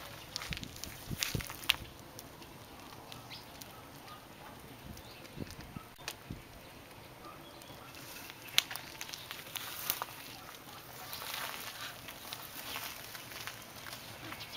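Faint, scattered crackles and ticks from a wood fire burning under a foil-wrapped grill lid, with thin lavash dough baking on the hot foil.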